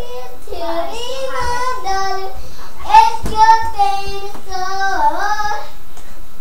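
A young girl singing a praise song, her voice gliding between held notes. A single brief thump about halfway through is the loudest sound.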